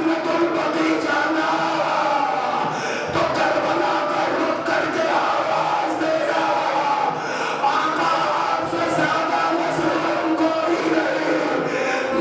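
A man's mournful chanted lament through a microphone, in long held notes that break off every second or two, over a crowd of mourners crying out.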